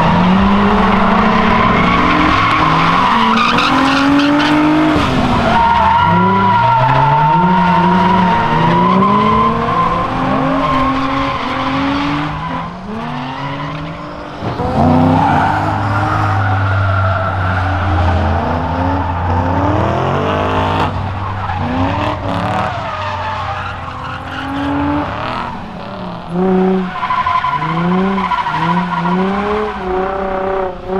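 Cars drifting on asphalt: engines revving up and down over and over while the tyres squeal and skid. In the middle stretch one engine holds a steady note for several seconds.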